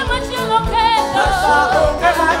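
Gospel band music: a singer holds wavering, vibrato notes over a steady bass line and drum beats.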